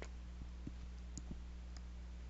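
A few faint, scattered computer mouse clicks over a steady low hum.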